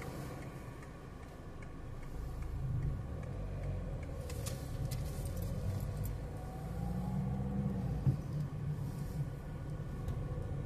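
A car's engine and tyre noise heard from inside the cabin while driving, growing louder from about two seconds in as the car picks up speed.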